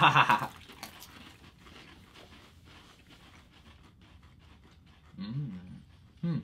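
A short burst of laughter, then faint crisp crunching and chewing as Pringles potato crisps are eaten, with a closed-mouth "mm" near the end.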